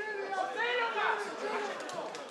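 Several voices calling and shouting over one another across a rugby pitch during play.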